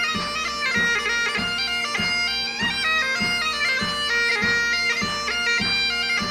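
Bagpipes playing a lively melody on the chanter over their steady drones, with a regular low beat about every 0.6 seconds underneath.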